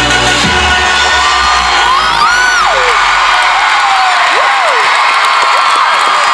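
Deep sustained intro music cuts off about half a second in, and a huge stadium crowd takes over, cheering and screaming, with high whoops rising and falling above the steady crowd noise.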